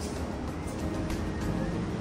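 Steady hum of distant road traffic from the street far below, growing slightly louder as the balcony door is passed, under background music.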